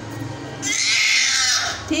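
A baby girl lets out one loud, high-pitched squeal that starts about halfway in and lasts just over a second.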